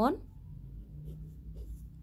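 Pen writing on ruled notebook paper: a few faint, short scratching strokes over a low steady hum.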